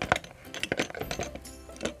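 Plastic cupping tools, a hand-held cupping pump and a lancet pen, being handled and knocked against a plastic basin: a run of irregular light clicks and clinks.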